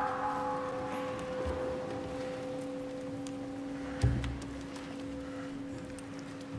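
A single low note held steady on a church organ, with a brief soft thump about four seconds in.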